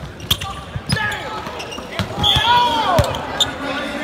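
Basketball practice on a hardwood court: a ball thuds on the floor several times. A burst of high sneaker squeaks comes a little after two seconds in, with voices in the gym behind.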